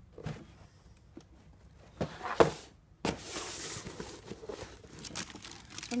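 Cardboard shoebox being handled and opened: a sharp cardboard knock about two seconds in, then tissue paper rustling and crinkling for a second or two, with lighter scuffs after.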